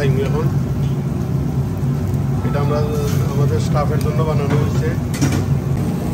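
Steady low mechanical hum of commercial kitchen equipment running, with a voice talking over it from about two and a half to four seconds in.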